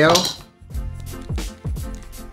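Squeeze bottle of mayonnaise being squeezed into a glass bowl, giving a few short squirts and sputters.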